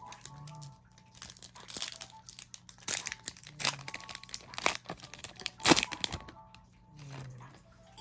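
Foil trading-card booster pack wrapper crinkling and crackling as it is torn open and handled, in irregular sharp crackles, the loudest a little before six seconds in.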